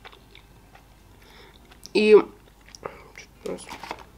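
A person chewing food close to the microphone: soft wet mouth sounds and small clicks, busier in the last second or so.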